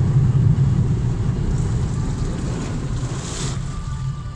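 A car ploughing through deep floodwater, heard from inside the cabin: a loud, steady low rumble of engine and tyres in water, with spray splashing against the body and windshield. A brighter rush of spray comes about three seconds in.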